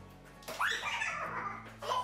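Loud wordless shrieks from a person, a long one about half a second in and a second starting near the end, over background guitar music.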